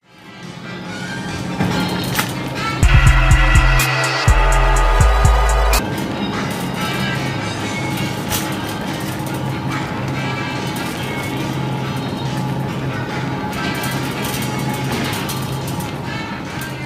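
Instrumental rap beat with no vocals, fading in from silence. It has a very loud, heavy bass passage from about three to six seconds in, then settles into a steady beat.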